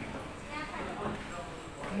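Faint voices of other people talking in the background over the low hum of a shop's room ambience.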